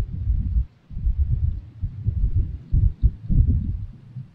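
Wind gusting across the camera microphone: irregular low buffeting that swells and drops in gusts several times.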